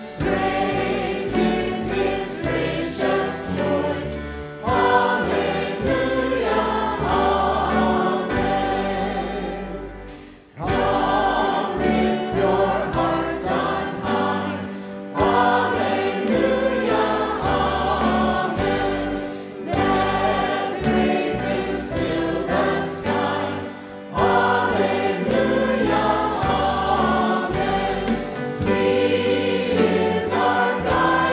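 Church praise team and choir singing a hymn into microphones, with band accompaniment including an electric bass. The singing runs phrase by phrase, with a brief lull about ten seconds in.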